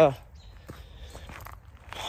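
Faint footsteps on the woodland floor: a few soft, widely spaced steps over a low steady rumble.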